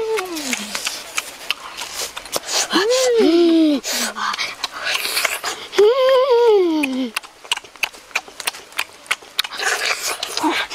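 A boy eating fish with his hands makes two drawn-out hums of relish, each rising and then falling in pitch, about three and six seconds in. Wet lip-smacking and chewing clicks run between them.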